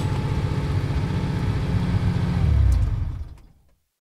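Car engine sound effect, running with a deep rumble and revving up, growing a little louder before fading out about three and a half seconds in.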